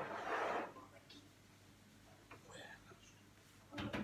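A short breathy, whispered sound in the first second, then near-quiet with a few faint light taps of a wire whisk in a frying pan and a sharper click near the end.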